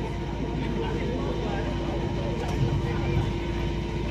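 Steady low rumble with a thin, steady hum in the background and faint, indistinct voices, in a pause between a man's words over a public-address microphone.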